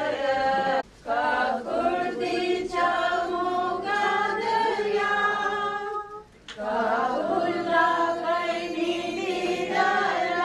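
A group of voices singing a hymn unaccompanied, in long held phrases with short pauses for breath about a second in and about six seconds in.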